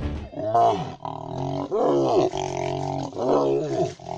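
A lion snarling and roaring while being mobbed by hyenas, with the hyenas' calls mixed in: three drawn-out cries that rise and then fall, with a steadier call between them.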